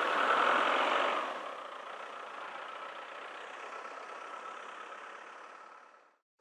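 A motor vehicle passing outdoors, loudest in the first second and then fading into a steady low background hum that cuts off suddenly at the end.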